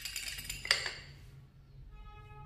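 Xóc đĩa shake: four counters rattling and clinking inside a porcelain bowl held upside down over a ceramic plate, a quick run of clinks with a last sharp clink a little under a second in, then fading out.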